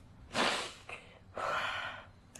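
A young woman crying, taking two heavy, shaky breaths about a second apart, each lasting about half a second.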